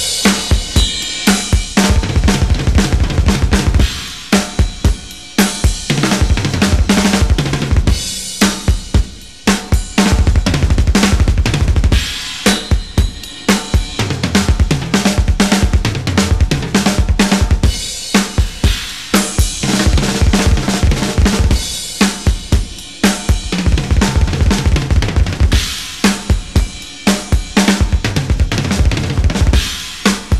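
Drum solo on a Premier kit with two bass drums: fast single-stroke runs on snare and toms interlocked with rapid double bass drum notes, mixing four-note groupings, sextuplets and six-note hand-and-foot groupings, with cymbal crashes.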